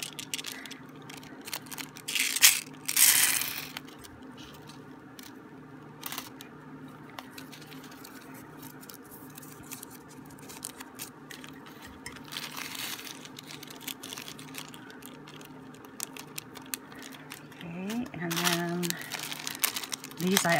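Small plastic zip bag of beads and a paper label strip being handled and crinkled, with two louder rustles a couple of seconds in and another near the middle.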